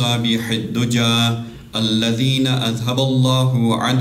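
A man chanting an Arabic invocation of blessings on the Prophet Muhammad in a slow, melodic recitation with long held notes, pausing briefly for breath a little under two seconds in.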